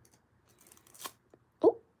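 Faint crinkling of thin metallic nail foil being handled and pressed onto a nail with a silicone stamper, with a soft tap about a second in. A brief surprised "oh" follows near the end.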